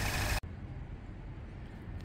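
Peugeot RCZ engine idling steadily on a freshly rebuilt fuel pump; the sound cuts off abruptly less than half a second in, leaving only faint, even background noise.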